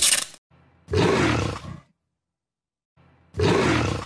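A big cat roaring twice, each roar about a second long with a pause between. This is the growl used as the Jaguar car brand's sound logo. A short sharp swish comes at the very start.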